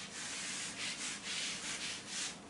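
Handheld whiteboard eraser wiping marker off a whiteboard in quick back-and-forth strokes, a dry rubbing hiss that comes in repeated swipes.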